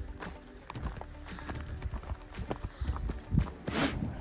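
Irregular footsteps and rustling through dry sagebrush on rocky ground, over a low rumble of wind on the microphone, with a brief loud rush of noise near the end.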